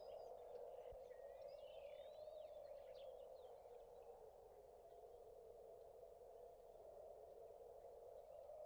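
Faint countryside ambience: a steady, low hiss with birds chirping faintly during the first few seconds.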